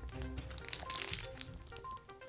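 A chocolate bar's foil wrapper crinkling loudly as it is handled and bitten into, a crackly burst of about a second near the middle. Background music plays under it.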